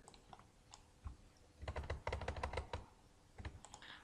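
Faint clicking on a computer keyboard and mouse: a few single clicks, then a quick run of keystrokes in the middle, and a few more clicks near the end.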